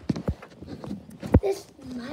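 A few sharp knocks and taps from handling, the loudest a little past halfway, with a short vocal sound just after it.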